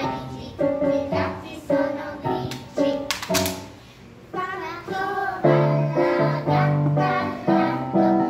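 Young children singing a song together with piano accompaniment. A single sharp clap-like hit comes about three seconds in, and the accompaniment turns to fuller, sustained low chords in the second half.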